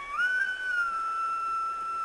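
A single steady high-pitched whistling tone that glides up a little as it starts and then holds level.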